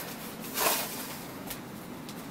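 Light handling sounds of a measuring spoon scooping sugar from a bag: a brief rustle about half a second in, then a single light click about a second later.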